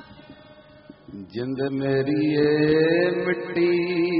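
A man's voice singing a slow line of Sikh kirtan (Gurbani), coming in loudly about a second in and holding long, drawn-out notes.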